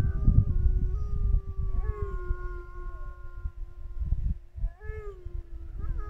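Several large mountain dogs howling together in long, overlapping held notes that rise and fall in pitch, over a low, uneven rumble.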